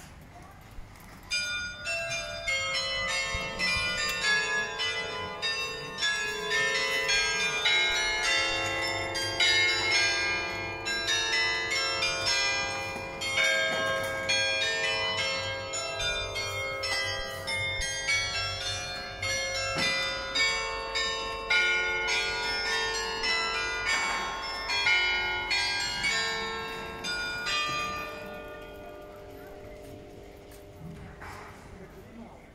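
Carillon bells in the Nieuwe Kerk tower playing a tune, many struck notes of different pitches ringing over one another. The tune starts about a second and a half in and dies away near the end.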